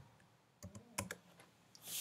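A few faint, separate keystrokes on a computer keyboard: the last characters of a typed terminal command and the Enter key.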